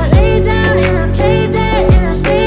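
Background pop song with a sung melody over a steady beat, with deep bass notes that slide down in pitch twice.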